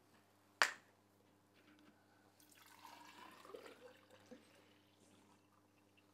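Activated-sludge sample poured from a glass flask into a tall measuring cylinder: a soft, faint pouring of liquid through the middle, filling the cylinder for a settling test. A single sharp knock about half a second in is the loudest sound.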